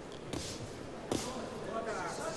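Boxing-ring ambience with two sharp thuds about a second apart: punches landing on the opponent's guard and gloves, which he blocks.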